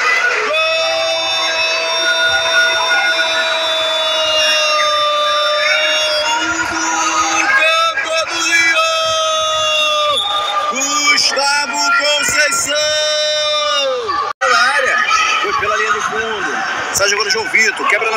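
A commentator's long, drawn-out goal shout held for several seconds, followed by shorter pitched cries, over a cheering crowd; a brief cut breaks the sound about fourteen seconds in.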